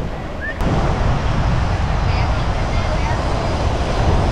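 Wind rumbling on the microphone over the steady wash of beach surf, with a click just over half a second in, after which it is a little louder. Faint voices are in the background.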